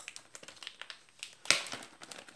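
A white paper mailer envelope handled by hand: light paper rustling and small taps, with one louder, sharp paper scrape about one and a half seconds in.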